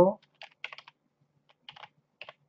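Computer keyboard keystrokes: two short runs of quick typing with a brief pause between them, as an email address is typed.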